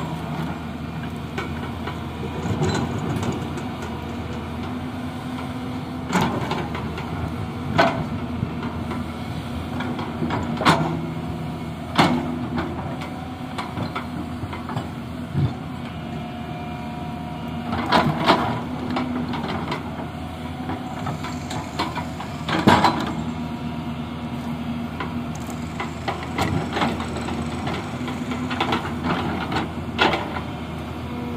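Hyundai 225 LC crawler excavator's diesel engine running steadily under working load while it digs, with sharp clanks and knocks every few seconds as the steel bucket strikes and scrapes rocky ground.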